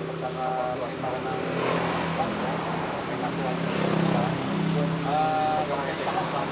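People talking, over a steady low hum from a motor.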